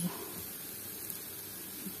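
Steady low sizzle of apple fritters frying in oil in a pan.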